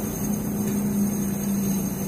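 Steady low hum and rushing noise inside a car's cabin, as of the engine idling.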